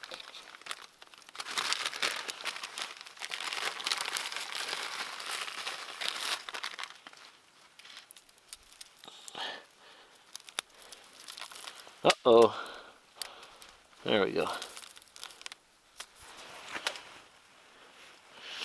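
Plastic zip-lock bag crinkling as it is handled, densest in the first several seconds, then quieter rustling with a couple of short vocal sounds later on.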